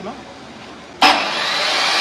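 Electric miter saw switched on about a second in: a sudden loud start, then the motor and blade running on steadily at speed, set to cut aluminium LED profile.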